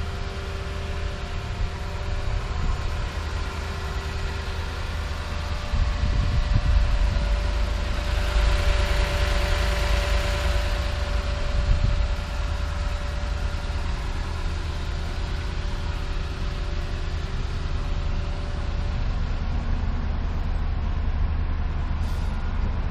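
Lexus GX 460 SUV idling steadily with a low hum, its broad rushing noise swelling about eight to twelve seconds in; low wind rumble on the microphone.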